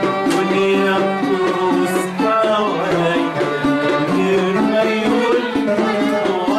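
A man singing an Arabic song in the classic Egyptian style, with instrumental accompaniment and a steady rhythm.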